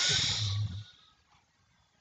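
A person's breath close to the microphone: one short hissing exhale lasting under a second.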